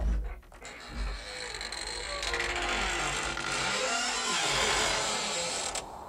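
Horror-style sound effect: a sudden thump, then a long, drawn-out creak over a low rumble that builds and cuts off suddenly near the end.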